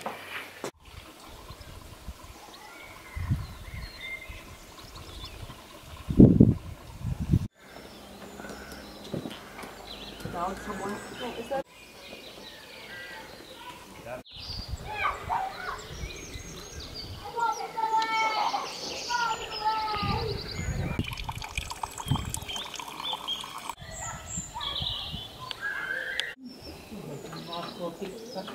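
Outdoor garden ambience: birds chirping and singing in short repeated phrases, with a few low rumbles of wind on the microphone. The sound breaks off and changes abruptly several times.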